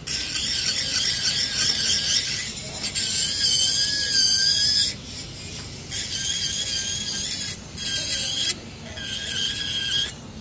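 Dental lab micromotor handpiece with an acrylic bur grinding excess acrylic off a lower special tray: a high-pitched whine that runs in spells, stopping briefly several times.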